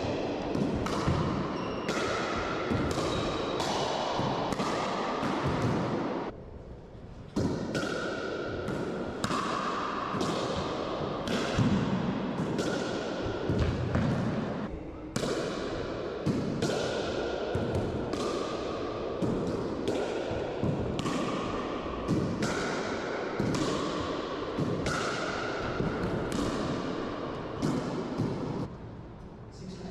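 Pickleball paddles striking the ball in a fast rally, with ball bounces in between. Each hit is a sharp pop that rings and echoes off the walls of an enclosed racquetball court. There are brief lulls about six seconds in and again around fifteen seconds.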